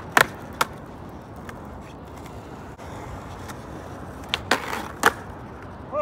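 Skateboard on smooth pavement: a hard clack as the board lands just after the start, a lighter clack half a second later, and the wheels rolling. Near the end come another tail pop, a short scrape and a sharp clack as the board comes down again.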